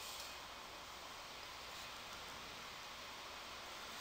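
Faint, steady background hiss of room tone, with no distinct events.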